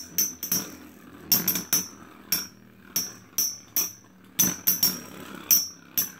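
Two metal Beyblade spinning tops clashing in a plastic stadium: a rapid, irregular run of sharp metallic clacks, about fifteen in six seconds, each with a brief high ring.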